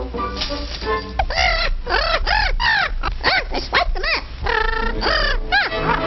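A rapid run of about a dozen squawky, bird-like calls, each rising and falling in pitch, over music on an old cartoon soundtrack.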